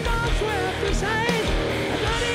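Rock band playing live, with electric guitars, bass and drums and a melody line that bends and wavers on top.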